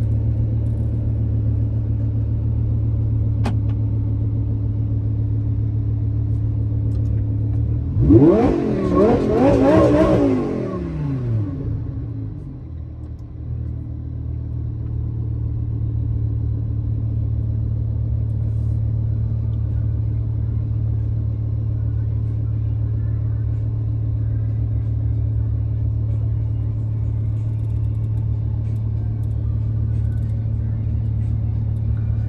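Sports car engine idling steadily, revved once about eight seconds in, the pitch climbing and falling back to idle over about three seconds.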